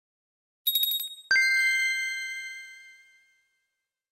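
Title-sting chime effect: a quick run of bright tinkling notes, then a single high ding that rings out and fades over about two seconds.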